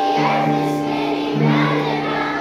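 A choir of young children singing a song together, with Orff xylophones playing along.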